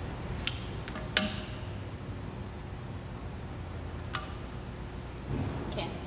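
Long-nosed butane utility lighter clicking as it is sparked to light a candle: three sharp clicks, about half a second in, just over a second in, and about four seconds in, the first and last with a brief high ring.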